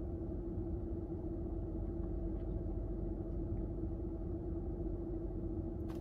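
Steady low hum with one constant tone inside the cabin of a parked car that is running.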